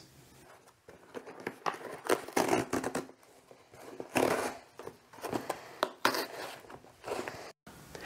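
A cardboard shipping box being torn open by its pull strip and its flaps pulled back: several short bursts of tearing and rustling cardboard.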